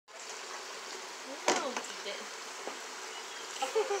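Steady rush of running water at a penguin pool. There is a single sharp knock about a second and a half in.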